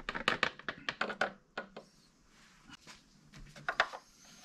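Plastic oil funnel lifted out of the engine's oil filler neck and the filler cap handled back into place: a quick run of light clicks and knocks in the first second or so, then a few more knocks later.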